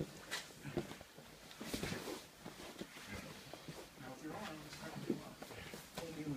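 Jiu-jitsu grappling on a mat: gi cloth rustling and bodies scuffing and bumping against the mat in several sharp knocks, with breathing and low grunts from the grapplers.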